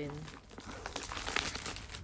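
Clear plastic wrapping being pulled off a cardboard box, crinkling in a dense run of irregular crackles that starts about half a second in.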